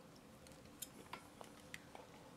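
Near silence with about five faint, short clicks from plastic forks and mouths as two people take bites of gelatin.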